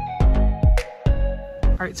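Background music with a heavy drum beat and held notes between the hits; a voice begins right at the end.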